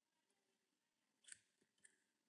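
Near silence: room tone, with two faint short clicks about half a second apart in the second half, from working a computer during code editing.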